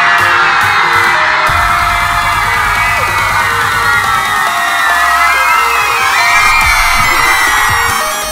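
A large crowd of young fans screaming and cheering continuously, with pop music playing underneath.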